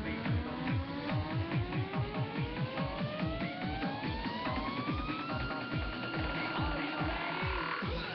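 Electronic dance music: a fast, steady kick drum under a synth tone that rises in pitch for about five seconds, then holds level until it cuts off near the end.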